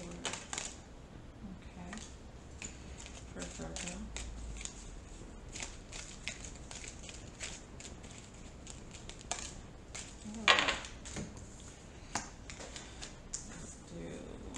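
A deck of round oracle cards being shuffled by hand: a steady run of small card-on-card clicks and flicks. A few brief voice sounds break in, the loudest about ten and a half seconds in.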